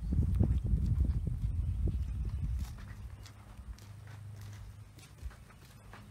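Footsteps walking up to a front door, irregular knocks over a low rumble that is loud for the first two and a half seconds and then dies down to a faint hum.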